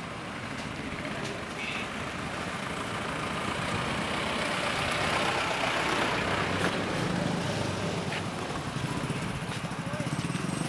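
Street traffic: motor vehicle engines running and passing, with a steady background rumble that swells to its loudest a little past the middle.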